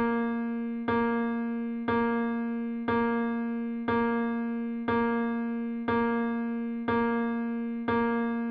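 A single electric-piano-like keyboard note struck over and over at an even pace, about once a second, each strike ringing and fading before the next; the beat of a polyrhythm demonstration.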